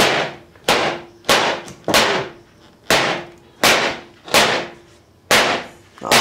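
A hammer striking a wooden bed frame, knocking its parts together: eight sharp blows, steady at about one every two-thirds of a second, each with a short ring.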